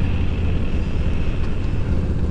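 Cruiser motorcycle engine running steadily while riding along at road speed, a continuous low rumble with road and wind noise over it.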